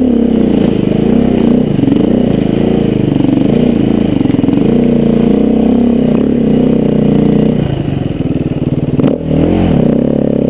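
Dirt bike engine running under load on a rutted climb, its pitch rising and falling with the throttle. It eases off briefly near the end, then revs up again.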